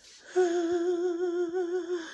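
A woman humming one long held note with a slight wavering in pitch, starting shortly after the start.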